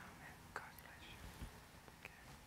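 Near silence: faint room noise with a soft click about half a second in.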